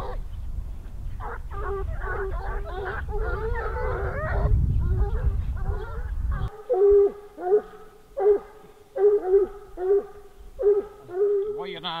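A pack of Grand Bleu de Gascogne hounds giving tongue as they run a hare's line: deep bays, many voices overlapping, with wind rumbling on the microphone. About halfway through the wind drops away, and single deep bays follow one another about twice a second.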